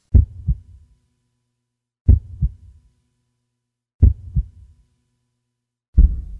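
Deep heartbeat-like double thumps, a pair every two seconds, three times, with silence between.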